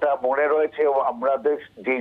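Speech only: a man talking over a telephone line, the voice sounding narrow and thin.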